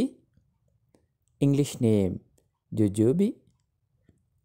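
Speech only: a voice saying a few short words, with silent gaps between them.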